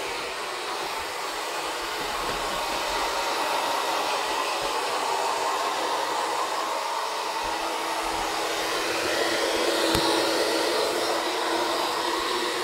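A handheld hair dryer runs continuously with a steady rushing whine as it blow-dries a wet dog after a bath. A low hum in the dryer's sound grows stronger about halfway through, and there is one brief click near the end.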